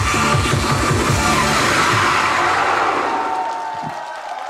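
Korean janggu and barrel drums beaten together over an electronic dance backing track, about four strokes a second, until the rhythm stops about two seconds in. Crowd cheering follows and fades away.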